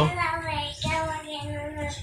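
A high voice, like a child's, singing two held notes, the second starting a little under a second in, quieter than the surrounding talk.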